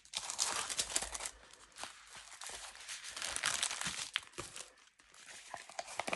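Plastic wrapping crinkling and rustling as a rolled diamond-painting canvas is unwrapped and unrolled by hand, with a short lull near the end.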